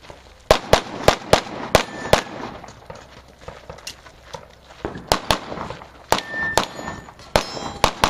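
Rapid handgun shots in two strings: about six quick shots in the first two seconds, a pause while the shooter moves, then another fast string from about five seconds in. Some shots are followed by a short metallic ring, like steel targets being hit.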